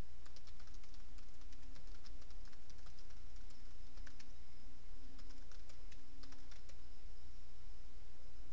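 Typing on a computer keyboard: an irregular run of quiet key clicks that thins out near the end, over a steady low hum.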